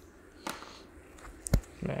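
Quiet handling of a graphics-card power cable and connector, with one sharp click about a second and a half in as the plug is worked against the card's power socket.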